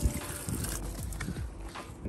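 Water from a garden hose spraying and splashing onto a metal steering rack, with a thump right at the start and wind rumbling on the microphone.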